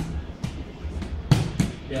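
Short dull thumps of bodies and hands on a grappling mat as the partners shift position: four knocks, the loudest pair about a second and a half in.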